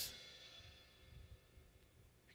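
Crash cymbal's ring dying away quickly over about half a second as it is choked by hand, then near silence.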